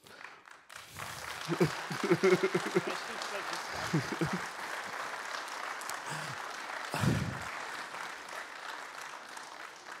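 Audience applauding. The clapping starts about a second in and keeps up steadily, with a few voices heard over it.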